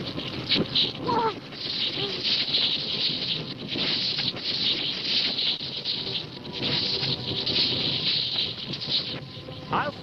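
Stampede sound effect of a wildebeest herd charging: a dense, continuous rushing din that swells and dips, with a brief cry about a second in.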